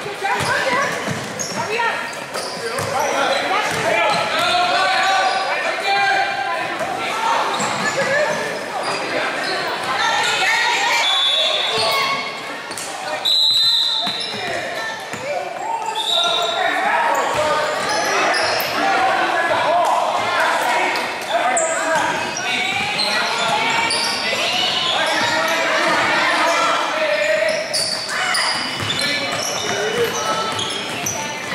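Basketballs bouncing on a hardwood gym floor under continuous talking and shouting from players and spectators, echoing in a large hall. Short, shrill referee's whistle blasts sound a little before and after the middle.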